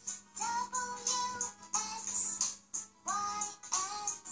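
A children's nursery-rhyme song, sung phrases over music, playing from a laptop's speakers.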